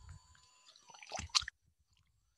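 A person taking a drink: short wet mouth and liquid sounds in two clusters, with a sharp click about a second and a half in, after which the sound stops abruptly.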